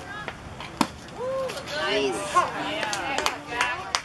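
A single sharp smack of a baseball impact about a second in, then several spectators shouting and cheering at once, with a couple more sharp knocks among the shouts.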